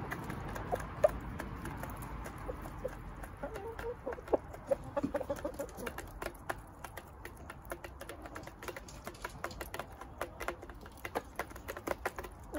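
Several hens pecking feed from a metal bowl: rapid, irregular clicks of beaks striking the metal, with soft hen clucks in between.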